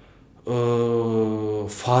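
A man's voice holding one long, level hesitation vowel ("eee") for about a second, after a short pause. Ordinary speech starts again near the end.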